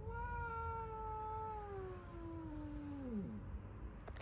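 A cat's long threatening yowl at another cat, one drawn-out call that rises briefly, then slides slowly down in pitch and breaks off after about three seconds: the sound of an angry cat warning off a rival.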